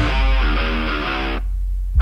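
Rock song with an electric guitar riff. About a second and a half in, everything drops out except a low bass note, then the full band crashes back in loudly at the end.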